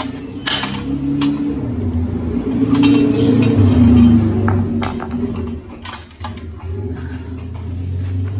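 Peugeot 206 rear trailing arm being worked off its steel shaft on the torsion-beam axle: a low grinding drone of metal turning on metal, with a few sharp metallic clinks. The arm's needle bearing is broken up.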